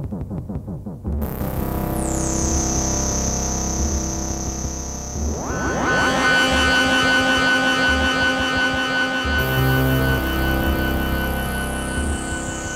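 Electronic music played on modular synthesizers: a low pulsing drone under a high whistling tone that sweeps down about a second in and again near the end. Around the middle a dense cluster of sustained tones slides up and swells in.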